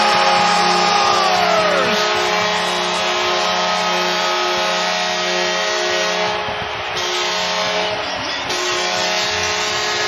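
Hockey arena goal horn sounding in long, repeated blasts over a crowd cheering a home goal.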